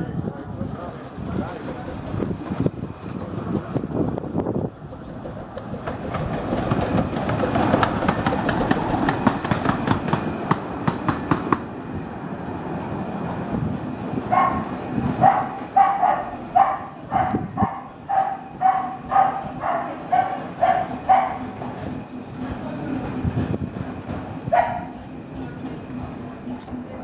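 15-inch-gauge steam locomotive Whillan Beck moving slowly through the station while shunting its coaches, its wheels clicking and clattering over the pointwork. From about the middle on, a dog barks about a dozen times in quick succession, once more near the end.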